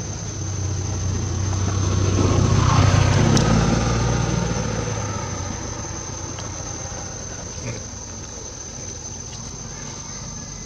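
A motor vehicle passing by: its engine and road noise swell to a peak about three seconds in, then fade away over the next few seconds. Underneath, a steady high-pitched insect drone continues throughout.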